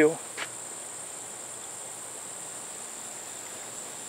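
Steady high-pitched chorus of insects, such as crickets, in a late-summer field.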